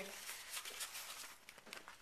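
Faint crinkling and rustling of trading-card packs and a cardboard box being handled, a run of small irregular crackles that fade toward the end.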